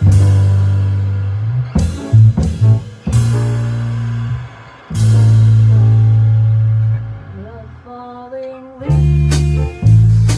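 A small jazz combo playing, with long held low bass notes and struck chords, and the drummer playing wire brushes on the snare drum.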